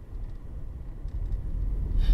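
Low, steady rumble of a car, heard from inside its cabin.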